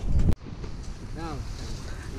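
Wind buffeting the camera's microphone: a loud low rumble that cuts off abruptly about a third of a second in, followed by steadier, softer wind noise.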